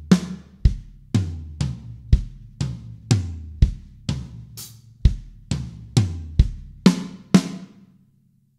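Drum kit played slowly as one fill: a bass drum kick followed by two hand strokes on the toms and snare, repeated in even three-note groups of about two notes a second. The last stroke falls just before the end.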